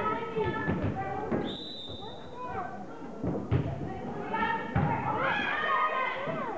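A referee's whistle blows once, steady and about a second long, then a volleyball is struck with sharp thumps, the loudest about three and a half seconds in, as the serve goes over and is played, amid voices echoing in a gym.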